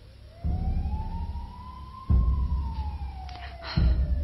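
Dramatic soundtrack music: a single eerie tone slides slowly upward, peaks about halfway, then slides back down, over three low drum hits spaced more than a second and a half apart.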